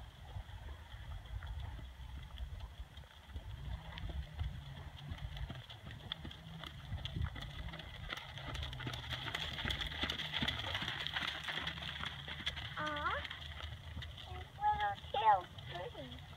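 Hoofbeats of a Thoroughbred gelding moving on a soft sand arena: a run of short, dull knocks over a low rumble.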